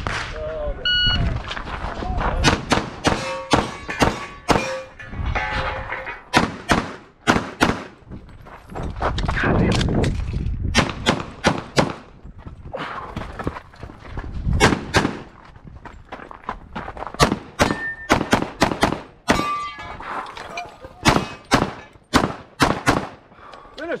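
A shot-timer start beep about a second in, then a long string of pistol shots from a Limited-division competition handgun. The shots come in quick pairs and runs with short pauses between strings and stop just before the end.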